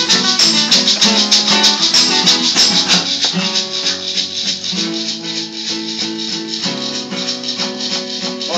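Live acoustic band playing an instrumental passage: strummed acoustic guitars and a hollow-body bass guitar, with a steady high rattle keeping time. The strumming is busy for the first three seconds or so, then the chords are held and left ringing more quietly.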